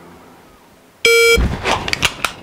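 MantisX shot-timer start beep, one short electronic tone about a second in, followed by the clicks and rustle of a pistol being drawn from an appendix holster for a dry-fire rep.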